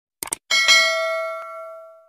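Two quick clicks, then a single bell-like chime, the notification-bell sound effect of a subscribe animation. The chime rings out with several tones and fades away over about a second and a half.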